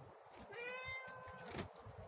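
A cat meowing faintly: one drawn-out meow of about a second, starting about half a second in.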